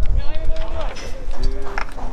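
Voices shouting and calling out in short bursts, over a steady low rumble of wind on the microphone.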